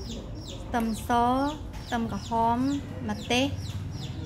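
Chickens clucking: a run of about six short calls, several bending up and down in pitch.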